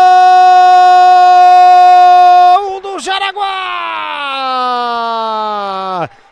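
A TV futsal commentator's drawn-out goal shout, 'Gooool!', held on one high steady note for about two and a half seconds. It breaks off, then a second long call slides steadily down in pitch.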